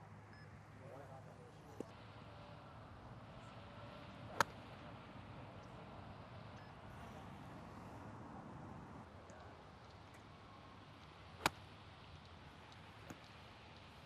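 Golf wedge striking a ball: two sharp clicks about seven seconds apart, over faint outdoor background.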